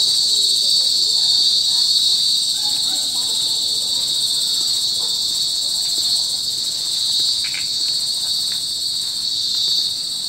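Crickets chirping in a steady, high, unbroken trill.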